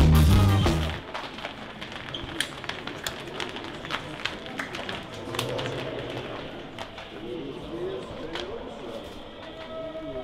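A live rock band with bass guitar and keyboard plays loudly and cuts off about a second in. After that comes a quieter indoor hum with low murmured voices and scattered sharp clicks.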